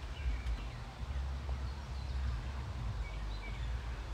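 Steady low outdoor rumble with a few faint, short bird chirps scattered through it.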